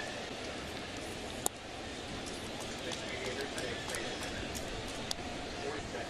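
Baseball stadium crowd, a steady hubbub of many voices, with a sharp click about a second and a half in.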